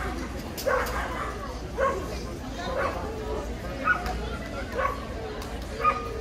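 A dog barking repeatedly, short barks coming about once a second.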